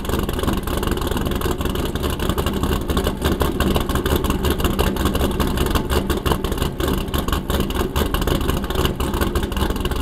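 Camshaft-modified C6 Corvette Z06 LS7 V8 with Corsa exhaust, running at or near idle with an uneven, choppy lope from its Lingenfelter GT21 camshaft.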